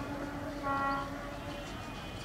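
Diesel locomotive horn blowing as a passenger train pulls in. One steady tone is already held, and a second, louder tone joins just under a second in. Both stop a little past halfway.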